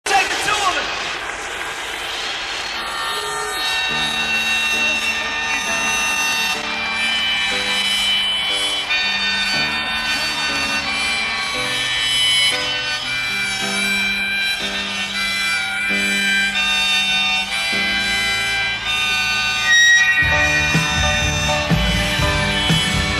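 Live rock song intro: a harmonica plays the melody in long held notes over sustained chords that change every second or two. The full band with drums comes in about twenty seconds in and the music gets louder.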